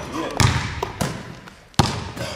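A basketball bouncing on a gym's hardwood floor, three hard bounces about half a second to a second apart, each echoing in the hall.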